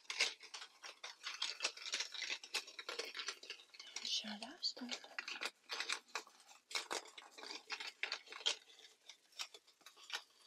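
Close-miked ASMR mouth sounds: a quick, irregular run of small clicks and crackles, with a brief low hum about four seconds in.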